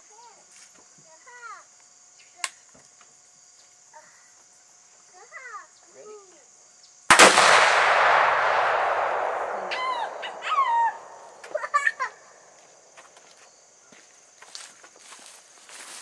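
A single shot from a scoped CVA muzzleloader rifle about seven seconds in: a sharp crack followed by a long echo that dies away over about three seconds.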